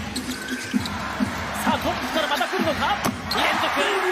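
Basketball bouncing on a hardwood court with sneakers squeaking, in a large arena. About three seconds in, the crowd's cheering swells.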